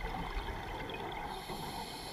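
Underwater sound of scuba diving: a steady wash of bubble noise with small crackles and clicks. About two-thirds of the way in, a faint high hiss begins, typical of a diver breathing in through a scuba regulator.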